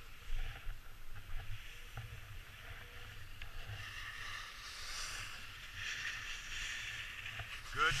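Skis sliding and scraping over packed snow. The hiss swells and fades with the turns, over a low rumble.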